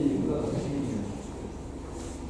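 Indistinct speech in a room, a voice talking mostly in the first second and quieter after.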